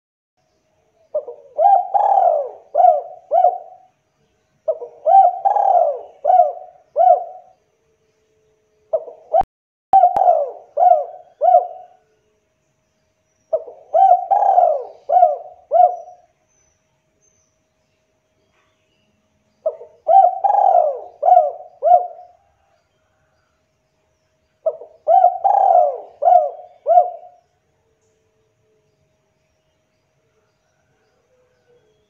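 Spotted dove (tekukur) cooing: six phrases, each a quick run of five or six short coos lasting about three seconds, every four to five seconds. The longest pause falls in the middle. A brief click sounds about ten seconds in.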